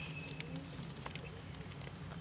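Faint outdoor background during a pause in speech: a low steady hum with a few soft, short ticks scattered through it.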